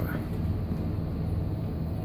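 Steady low hum of a quiet supermarket's room tone, with no voices close by.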